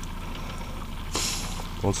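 Outboard motor idling with a steady low hum. A short hiss comes a little over a second in.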